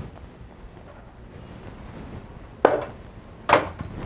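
Glass soju bottle being put back into the plastic door shelf of an open refrigerator, knocking twice, a little under a second apart.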